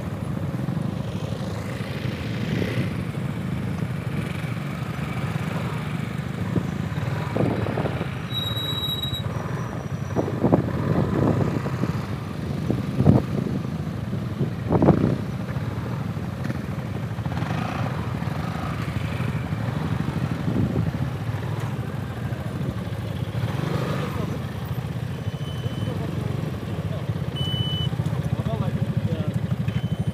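Piaggio MP3 three-wheeled scooter's engine running steadily at low speed and then idling, heard from the scooter itself, with a few short knocks about halfway through.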